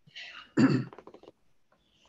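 A man clearing his throat once, a short breathy rasp that ends in a brief voiced grunt.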